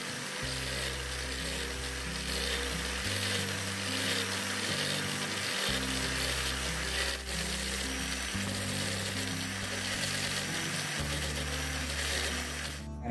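A small handheld power tool cutting coconut shell, a steady dense cutting noise, under background music with sustained bass notes that change every few seconds.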